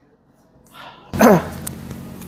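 A short vocal call about a second in, sliding down in pitch, then the low noise of a room with people in it.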